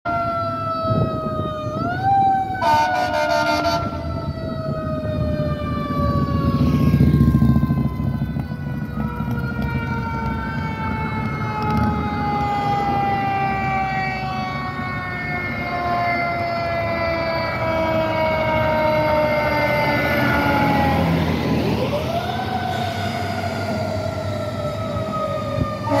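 Fire apparatus siren on an approaching 2018 Pierce Arrow XT ladder tower. Its pitch climbs quickly and then falls slowly over several seconds, three times, with a brief horn blast about three seconds in.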